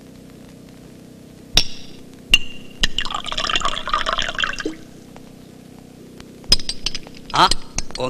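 A brass flip-top petrol lighter clinks open with a metallic ring, its wheel clicks, and a hiss of about a second and a half follows as a cigarette is lit. The lid snaps shut with a sharp click about six and a half seconds in, followed by a couple more clicks.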